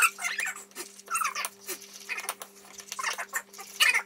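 A utensil stirring and scraping in a pan, making irregular squeaky scrapes about once or twice a second over a steady low electrical hum.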